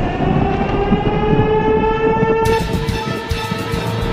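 Outdoor tornado warning siren sounding a steady wail, its pitch creeping slightly upward, over the fading tail of a thunderclap. Music with a beat comes in about halfway through.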